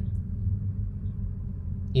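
Porsche 930's air-cooled turbocharged flat-six idling steadily at about 1000 rpm, a low, even rumble heard from inside the cabin.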